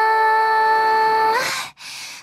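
Female singer holding one long, steady sung note over a thinned-out accompaniment with no bass. The note bends up slightly and stops about a second and a half in, leaving a short quiet dip near the end.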